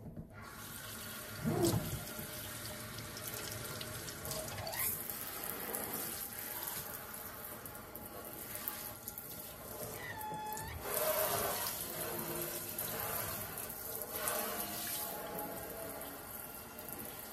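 Kitchen faucet turned on right at the start, then water running steadily into a stainless steel sink and splashing as the basin is rinsed by hand. A couple of short squeaks stand out, one about two seconds in and one about ten seconds in.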